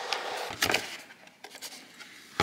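Handling noise: soft rubbing and scraping with a few light knocks, loudest in the first second and fading after, as a toddler fiddles with a cardboard box and a stick vacuum's wand on a hard floor.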